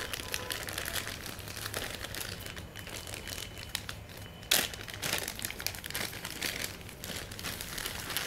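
Clear plastic bag crinkling as hands handle it and pull it open, with one sharp, louder crackle about halfway through.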